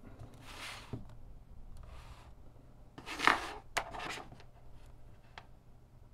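Handling noise of multimeter test leads being picked up and put to a small circuit board: two short rubbing sounds, the louder about three seconds in, with a few light clicks.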